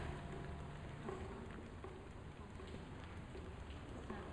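Quiet room tone in a seminar hall: a faint steady low hum with light rustling and a few small clicks.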